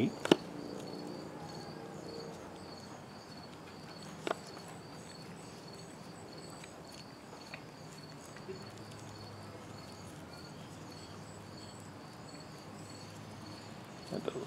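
Insects chirping steadily in the background: a faint, high, evenly pulsing trill. A single sharp click sounds about four seconds in.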